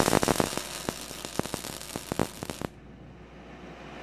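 MIG welding arc crackling as a bead is run along a joint on a wrought iron handrail, cutting off suddenly about two-thirds of the way through when the trigger is released.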